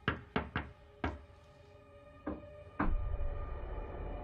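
Knuckles knocking on a bedroom wall: three quick knocks, a single knock about a second in, then two more near the three-second mark. A deep low rumble starts with the last knock and carries on.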